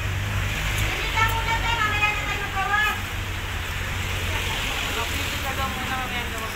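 Busy shopping-mall ambience: a steady low hum and hiss of the crowded hall, with another person's voice speaking faintly for a couple of seconds, about a second in.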